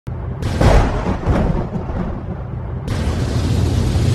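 Intro music for a production-company logo, with deep bass and two heavy hits in the first second and a half. The music fills out abruptly about three seconds in.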